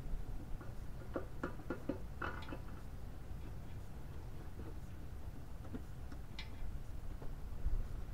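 Light metal clicks and taps as an aluminum cylinder head is handled and set down over the head studs onto the engine block: a quick run of them between about one and two and a half seconds in, and a single tap a little after six seconds.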